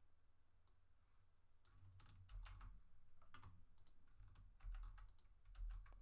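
Faint typing on a computer keyboard: scattered keystroke clicks starting about a second and a half in.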